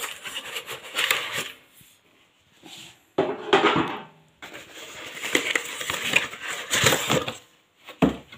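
Cardboard and plastic packaging crinkling and crumpling as it is handled. The noise comes in irregular bursts, with a sudden loud burst a few seconds in and a stretch of scratchy handling noise and light knocks later on, as the fryer's plastic basket comes out.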